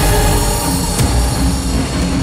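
Dramatic background score: held tones at several pitches over a deep, steady rumble.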